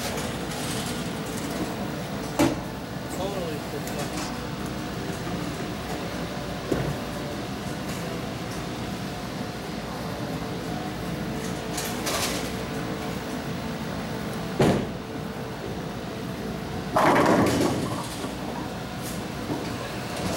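Bowling alley ambience with a steady machinery hum. A ball is bowled down the lane and strikes the pins with a sharp crack about fifteen seconds in, followed a couple of seconds later by a louder clatter lasting about a second.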